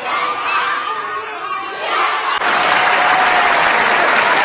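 Audience cheering and shouting. About two and a half seconds in, it switches suddenly to louder, steady applause.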